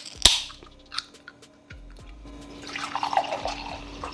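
A small aluminium can of mocha energy latte snapped open with a sharp crack and a short hiss near the start, then, from about halfway, the latte poured in a steady stream into a glass mug.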